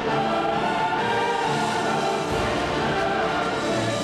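Orchestral trailer music with a choir singing long held notes.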